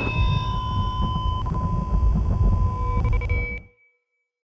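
Synthesized logo-intro sound: several steady electronic tones held over a deep rumble, fading out a little before the end, with one high tone ringing on briefly after the rest has stopped.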